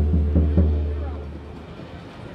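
Bass drum struck by a kick pedal with a fleece-covered felt beater ball (Vic Firth VKB3): several quick strokes giving a deep, low boom with very little attack. The last stroke lands about half a second in, then the drum rings down and fades out.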